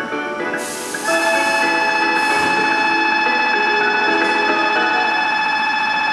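Station platform departure signal: short chime tones for about the first second, then a loud, steady ringing tone held for about five seconds, warning that the train is about to leave.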